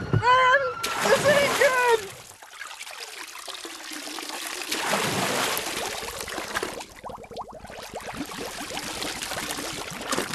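A golf cart and its riders plunging into a lake: a sudden splash about a second in, over shouting, then a long stretch of churning, rushing water heard with the camera under the surface.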